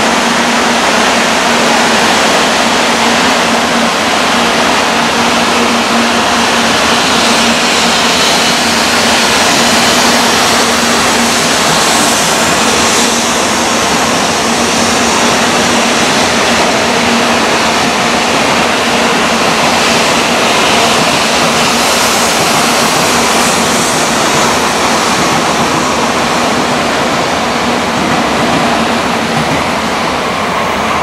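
A 700 series Shinkansen train running along the platform track: a loud, steady rushing of wheels and air, with a low hum underneath that fades away after about twenty seconds.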